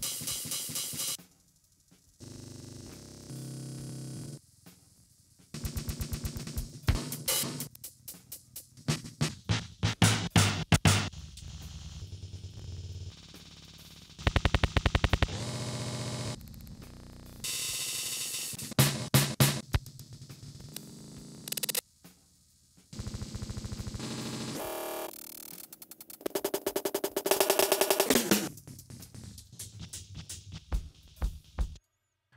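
Output of a Max Gen pitch-shifting live looper patch: percussive music replayed as a loop in abruptly cut segments, with fast stutter-like repeats, changing as the pitch and loop-length knobs are turned. There are two short drop-outs to near silence, early on and about two-thirds through.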